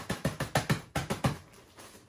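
Zip-top plastic bag being pressed shut by hand, its zipper track giving a quick run of about ten clicks over roughly a second and a half, then going quiet.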